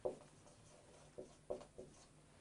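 Marker pen scratching and squeaking on a whiteboard in a few short, faint strokes as a word is written.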